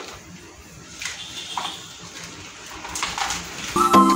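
A small plastic scoop digging into and scraping loose potting soil in a planter, a few soft scrapes and rustles. Background music comes in near the end.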